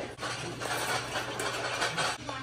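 Wire shopping cart being pushed across a concrete floor: a steady rolling noise from the wheels and loaded basket, with a few light clicks, over a low steady hum.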